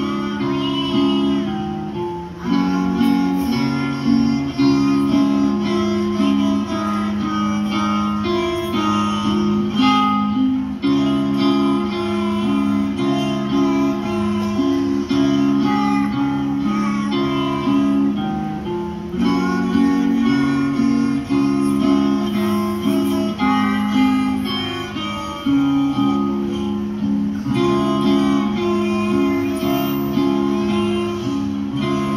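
Violin bowed live over a recorded music backing track, amplified through a stage sound system; the music runs without a break.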